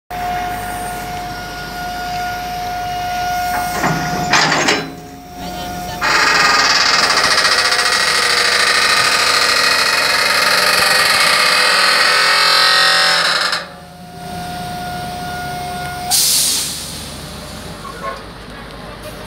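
Amphibious excavator's diesel engine and hydraulics working hard as the machine climbs onto a lowboy trailer, heard from the cab. A steady high tone sits over the engine at first; from about six seconds in the machine gets much louder with a whining note for some seven seconds, then drops back and the steady tone returns briefly.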